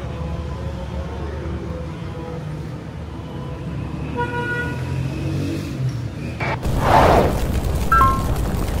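City street ambience at night, with a steady low traffic rumble and a short car horn toot a little after halfway. Near the end it cuts to a loud whoosh.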